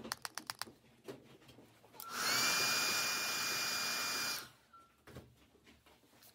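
A quick run of clicks, then a small electric motor whirs up with a rising whine, runs steadily for a little over two seconds and cuts off.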